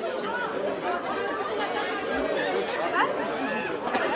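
Crowd chatter from a large group of runners gathered together: many people talking at once, a steady hubbub of overlapping voices with no single voice standing out.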